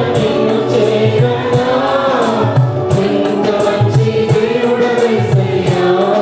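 A mixed choir of men and women singing a Telugu Christian worship song together into microphones, with electronic keyboard accompaniment and a steady beat.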